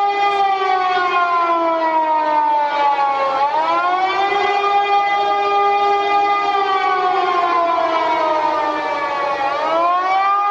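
Outdoor air-raid siren wailing: its pitch holds, then falls slowly and sweeps quickly back up, twice, about six seconds apart.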